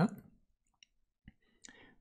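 A spoken word ends, then near silence with a few tiny, faint clicks spread over the next second and a half.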